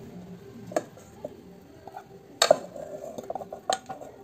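Wooden spatula scraping stir-fried oncom out of a non-stick wok into a rice cooker pot, with a few sharp knocks of spatula and pans against each other, the loudest about two and a half seconds in.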